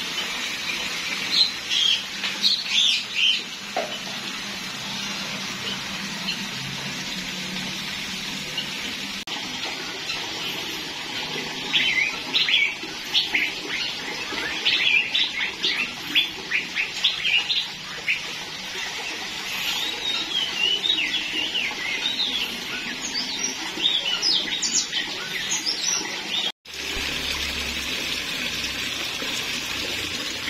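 Several aviary birds chirping and calling in quick runs of short, high notes, over a steady rush of running water.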